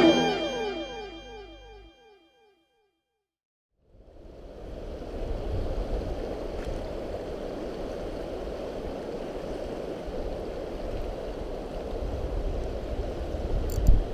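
A music track dies away in the first two seconds and, after a moment of silence, the steady rush of a fast-flowing river fills the rest, with a sharp click at the very end.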